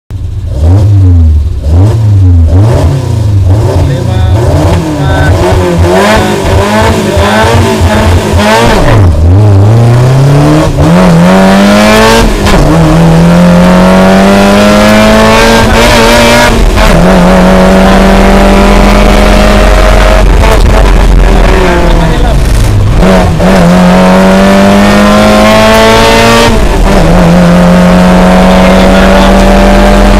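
Suzuki Jimny rally car's engine, heard loud from inside the cabin. It is revved in short blips at first, then pulls away and accelerates hard through the gears, its pitch rising steadily and falling back at each upshift. One deeper dip comes as the car slows before it pulls again.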